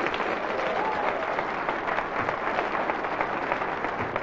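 Studio audience applauding steadily, a dense patter of many hands clapping.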